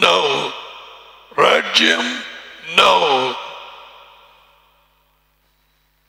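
A man's voice over a microphone making three short, drawn-out utterances, each falling in pitch, with a long echo trailing after each.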